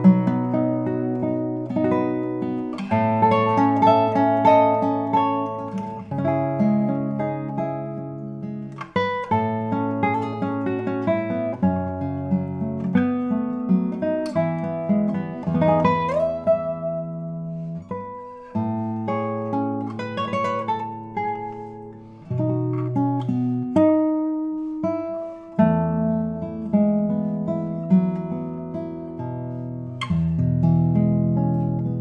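A 2023 Robin Moyes classical guitar, radially braced with a spruce top, played solo: a piece of plucked nylon-string chords and single notes, with low bass notes ringing under the higher ones.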